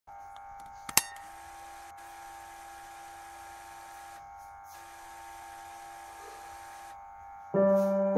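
A steady electronic buzzing tone with a single sharp click about a second in, then piano music starting near the end.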